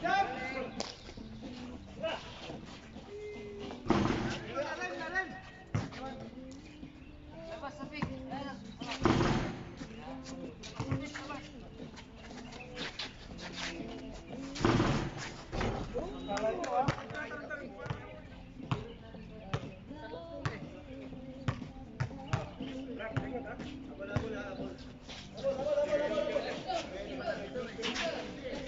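Pickup basketball game: players' voices shouting and calling across the court, with a basketball bouncing and thudding on the hard court at irregular moments.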